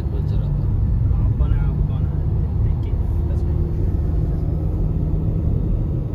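Car driving along a paved road, heard from inside the cabin: a steady low rumble of engine and tyres. Faint voices are heard in the background.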